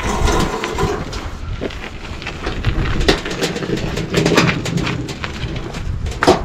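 Split firewood logs knocking against each other as they are stacked in a metal wheelbarrow, with scattered knocks and clatters, then the loaded wheelbarrow lifted and rolled over gravel with a low rumble.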